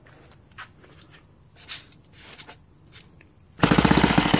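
A few faint clicks, then about three and a half seconds in a Saito FG-36 four-stroke gasoline model-aircraft engine on CH CDI ignition fires up at once and runs loudly with a rapid, even beat. It starts easily on the restart.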